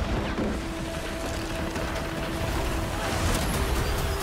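Movie trailer sound mix: a heavy, rumbling rush of crashing water and breaking wood under a held musical note.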